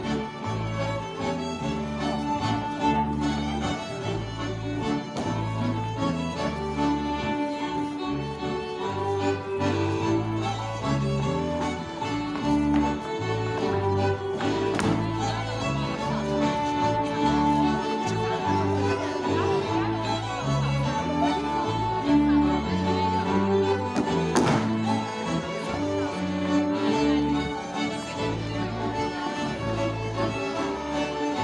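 A folk dance band playing a Swedish polska on several fiddles with a guitar, in a steady dance rhythm. Two sharp knocks cut through, one around the middle and one about three-quarters in.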